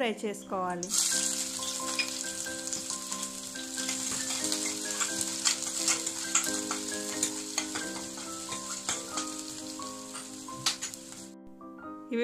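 Chopped garlic and whole spices sizzling in hot oil in a stainless steel kadai, stirred with a spatula, with small pops and clicks. The sizzle starts about a second in and cuts off suddenly near the end, over soft instrumental music.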